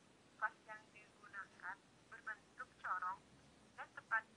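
A woman's voice narrating, thin and tinny, like speech heard over a telephone.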